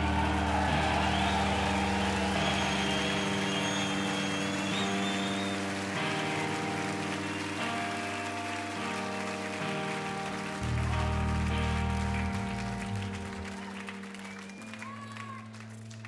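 Live rock band holding sustained electric guitar and bass notes that change every few seconds and slowly fade, with the crowd cheering and applauding under them.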